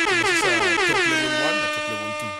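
Edited-in horn-like sound effect. It cuts in abruptly as a loud chord that drops in pitch at first, then holds steady for about two seconds before fading.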